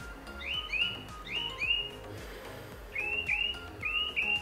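A bird chirping repeatedly, short notes that drop in pitch and come mostly in pairs, about eight in all, over soft background music.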